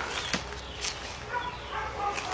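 Short animal calls in the background, several brief pitched cries, over a steady low hum, with a sharp click about a third of a second in.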